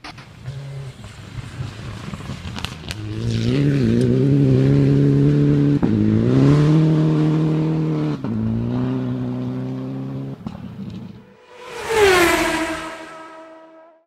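Rally car engine approaching at full throttle, revving in long pulls broken by quick gear changes, then passing close about twelve seconds in with a sharp drop in pitch and fading away.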